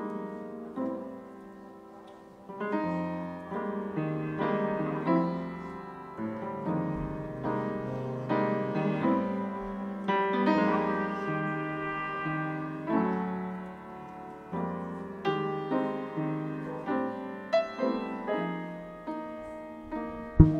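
Live small-group jazz with an acoustic upright piano out front, playing chords and single-note lines, with double bass underneath.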